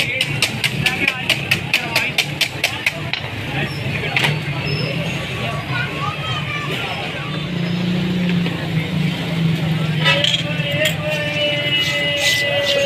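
Wire whisk beating eggs in a steel bowl: rapid, even clinking strokes, about five a second, that stop about three seconds in. A similar quick clinking comes back briefly near the end, over a steady hum of street noise and voices.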